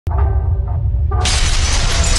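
Produced intro soundtrack: music and a deep rumble start abruptly, and about a second in a loud glass-shattering sound effect comes in and keeps going.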